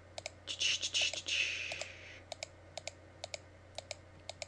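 Computer mouse clicking, about two to three unevenly spaced clicks a second, as pen-tool points are placed one by one along a mask path. A soft rushing hiss comes in about half a second in and fades out after about a second and a half.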